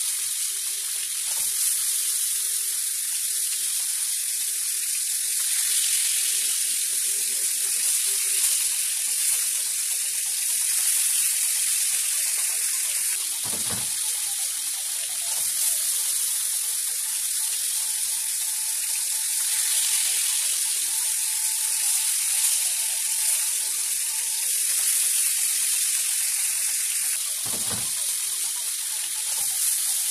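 Crab curry frying in a nonstick wok, a steady sizzle throughout, with two brief knocks, one about halfway and one near the end.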